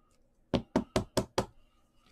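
Five quick, sharp knocks on a hard surface in a row, about five a second, starting about half a second in.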